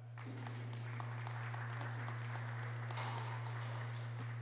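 Audience applauding, many hands clapping steadily for a few seconds, over a steady low hum.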